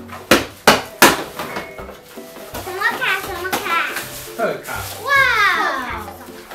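Three sharp knocks about a third of a second apart, a child's hand striking the cardboard poke-box lottery board, followed by a girl's high-pitched calls that glide downward, over background music.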